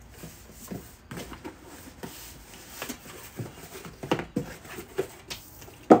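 Handling noise of order packing: paper rustling and light taps and knocks on a cardboard box as a printed sheet and items go in, with one sharper knock near the end.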